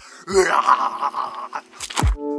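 A man's drawn-out yell, lasting about a second, followed by a sharp click near the end.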